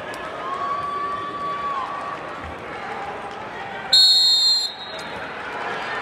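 Scoreboard buzzer sounding once for just under a second, about four seconds in, over gymnasium crowd noise; it marks the end of a wrestling period.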